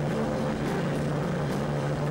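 Stoner rock band playing live: heavily distorted electric guitar and bass holding one low note that drones steadily, with little drumming.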